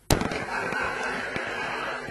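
Bocce balls striking with a sharp clack just after the start, the thrown ball hitting the target ball directly on the fly (a 'bocha de primera'), followed by the echoing hall and a couple of fainter knocks of the balls.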